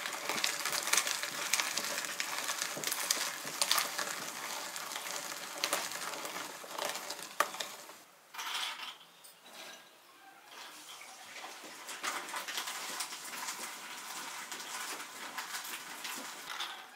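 Hand-cranked metal meat grinder crushing hazelnuts: a dense, crackling grind with sharp clicks. It stops briefly about eight seconds in, stays weaker for a few seconds, then picks up again.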